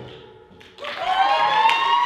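Audience reacting as a song ends: a long rising "woo" cheer starts about a second in, over the first scattered claps of applause.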